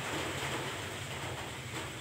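A steady low machine hum under an even hiss, holding constant with no distinct strikes or changes.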